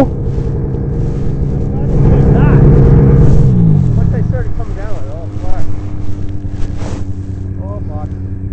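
Snowmobile engine running steadily, swelling about two seconds in and then falling in pitch to a lower idle, with brief laughs and voices over it.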